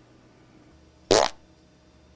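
A man's single short snort of laughter, one brief breathy burst about a second in.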